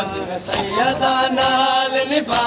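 A noha, a Shia mourning lament, chanted by a man's voice in long, held lines. Sharp slaps of chest-beating (matam) come in a regular beat roughly every 0.7 seconds.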